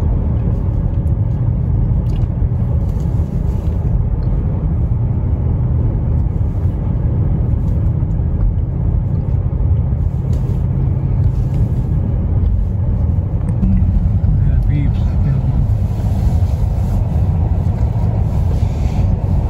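Steady low rumble of a car driving slowly, heard from inside the cabin, its tyres running over a wooden bridge deck.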